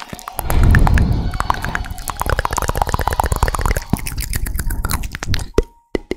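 Close-miked mouth sounds: rapid wet clicks, pops and smacks, several a second, with a deep breathy rush into the microphone about half a second to a second in. The sound cuts out briefly just before the end.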